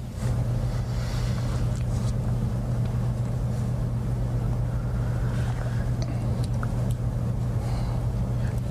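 A steady low hum with no speech, with a few faint ticks over it.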